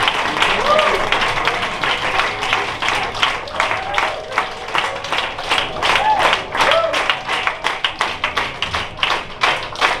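Audience applauding, the clapping turning into steady rhythmic clapping of about three to four claps a second in the second half, with a few voices calling out over it.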